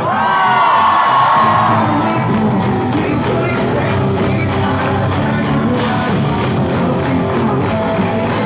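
Live rock band playing loud through a club PA: drums, electric guitars and lead vocals. A long high note is held through the first couple of seconds.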